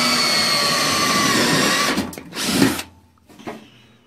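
Ryobi 18-volt cordless drill boring through thin sheet metal: a steady whine that stops about two seconds in, then a short second burst.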